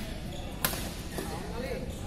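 A badminton racket hitting a shuttlecock during a rally: one sharp smack about two-thirds of a second in, ringing briefly in a large hall, with people talking in the background.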